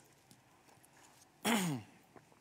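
A man's brief voiced exhalation after a sip of a drink, falling in pitch, about one and a half seconds in; the room is quiet before it.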